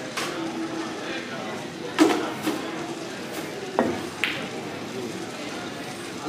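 Pool balls being struck and knocking together: a sharp knock about two seconds in, the loudest sound, then a few more clacks about two seconds later, over a murmur of voices in a large room.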